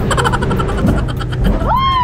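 Speedboat engine and wind rumbling steadily, with a person's long high cry near the end that rises and then falls in pitch.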